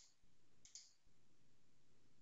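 Near silence, broken by a faint computer mouse click about two-thirds of a second in as a menu item is selected.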